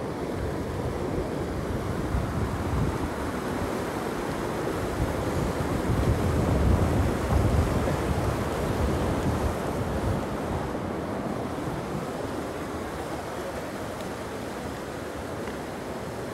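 Rushing water of a mountain stream, a steady roar that grows louder toward the middle and then slowly fades.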